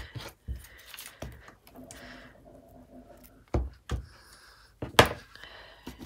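Wood-mounted rubber stamps being inked and pressed onto kraft paper on a tabletop: a few scattered knocks, the loudest about five seconds in.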